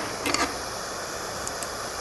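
Propane torch burning with a steady hiss.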